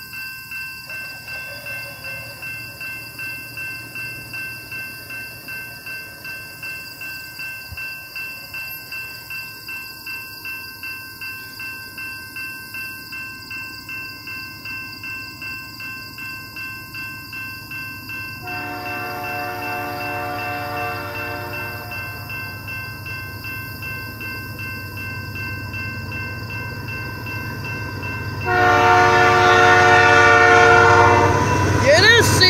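A railroad crossing bell dings in an even, rapid rhythm while an approaching Canadian Pacific freight train blows its horn: one long blast about 18 seconds in, then again, louder, near the end as the locomotive nears the crossing.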